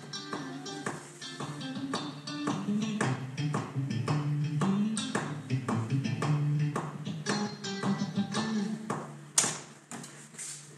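Playback of a recorded electric rhythm-guitar track, soloed, with a metronome clicking along in steady time. A sharp click sounds about nine seconds in, and the level drops after it.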